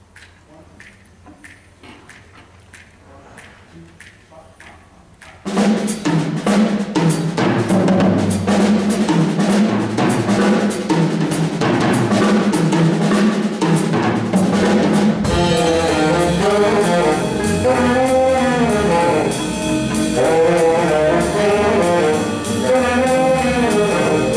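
A jazz big band of saxophones, trumpets, trombones, piano and drum kit playing. It starts soft with light ticking; about five seconds in the full band comes in suddenly and loudly with drums and cymbals. In the second half the horns carry a wavering melody line over the kit.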